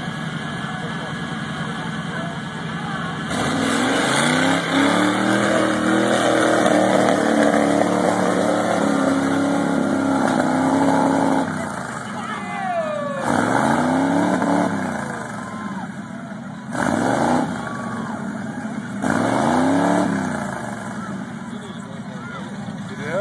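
Off-road mud-bogging rig's engine revving hard as it churns through a mud pit: about three seconds in it climbs to high revs and holds there for roughly eight seconds, then it is blipped up and down in three shorter bursts.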